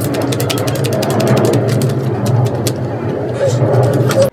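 Loud mechanical racket: a steady low engine-like hum with a rapid, irregular clatter of clicks over it.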